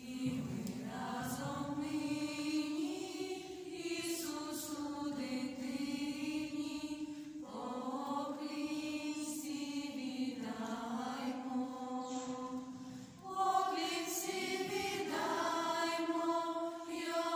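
A group of girls and young women singing a Ukrainian Christmas carol (koliadka) unaccompanied, in long held phrases, with a short break before a louder phrase near the end.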